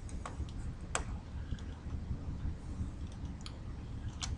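A few sparse computer mouse clicks, the sharpest about a second in, over a steady low room hum.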